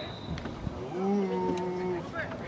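A man's long shout held on one steady pitch for about a second, starting about halfway through, over faint chatter from the pitch.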